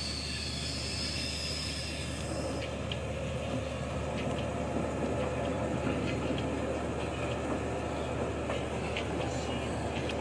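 El Chepe passenger train running along the track: a steady rumble and rail noise with a high wheel squeal that dies away about two seconds in, followed by light, irregular clicks.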